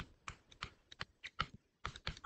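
Stylus tapping and stroking on a tablet screen while handwriting: about eight light, irregular ticks.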